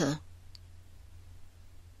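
The tail of a spoken word at the very start, then a pause holding only a faint steady low hum, with one small click about half a second in.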